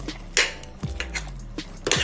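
Metal spoon knocking and scraping against a stainless steel pot while stirring sliced eggplant in coconut cream: a handful of sharp clicks, the loudest near the start.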